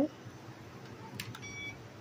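Self-balancing hoverboard powering on: a click, then a moment later one short high electronic beep.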